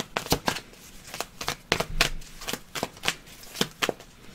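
A deck of tarot cards being shuffled by hand: an uneven run of light card slaps and clicks.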